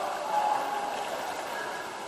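Muffled underwater sound picked up by a camera submerged in a swimming pool: a steady rushing hiss with indistinct, muffled voices through the water, swelling briefly about half a second in.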